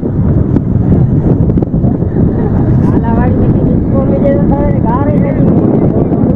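Loud wind buffeting a phone's microphone on the open deck of a fishing boat at sea, a constant low rumble, with men shouting over it about halfway through.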